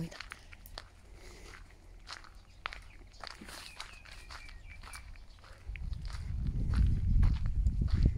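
Footsteps on gravel: a series of light crunches as someone walks. From about six seconds in, a louder low rumble on the microphone takes over.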